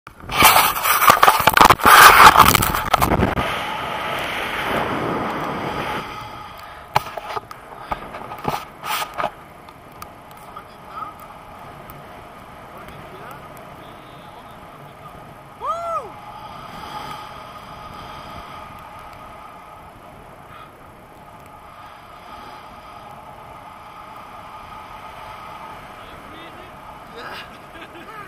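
Wind rushing over an action camera's microphone in tandem paraglider flight: loud buffeting for the first few seconds, then a quieter steady rush. There are a few sharp knocks around 7 to 9 seconds in and one short pitched sound near the middle.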